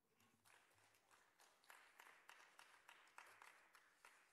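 Faint, sparse audience applause: scattered hand claps, about three a second, building up after half a second and dying away just after the end.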